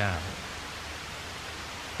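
A man's voice trails off at the end of a word at the very start, then a steady, even hiss of the recording's background noise fills the pause.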